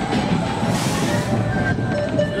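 Small children's roller coaster train running along its steel track, with a steady rumble and rattle of its wheels heard from the front seat.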